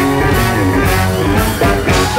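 Live band kicking into a song: drums, bass and electric guitar with a trumpet on top, starting abruptly right after crowd cheering.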